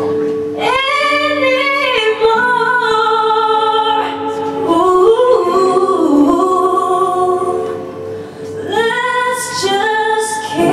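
A woman sings a melody into a microphone over strummed acoustic guitar, live. The sung phrases pause briefly about eight seconds in, then pick up again.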